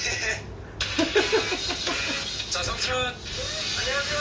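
Audio of a Korean variety show playing: short bursts of voices over light background music.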